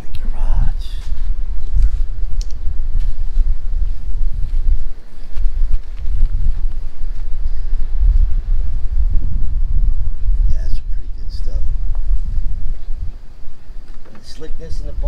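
Wind buffeting the microphone: a loud, gusty low rumble, with brief lulls about five seconds in and near the end.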